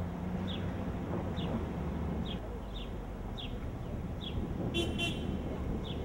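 City street ambience: a steady traffic rumble with a bird chirping repeatedly, and a short double toot of a car horn about five seconds in.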